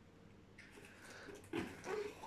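Faint sounds of a small child struggling to squeeze into a cardboard box: a quiet rustle of the cardboard, then a short strained whimper-like vocal sound near the end.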